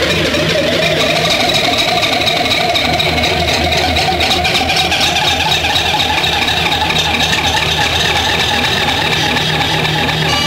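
A loud, steady, engine-like drone with a rapid flutter running through it, unbroken throughout.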